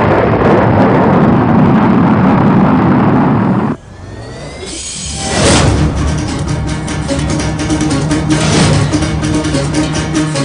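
Recorded rocket-launch sound effect played over loudspeakers: a loud rushing noise that cuts off suddenly about four seconds in. A rising whoosh follows, then a dance song with a steady beat starts.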